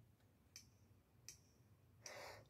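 Near silence with two faint, short electronic clicks about three-quarters of a second apart: a metronome click counting off the entry.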